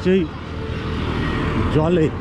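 A motor vehicle passing on the road, its noise swelling over about a second and a half before fading, with a man's voice briefly at the start and near the end.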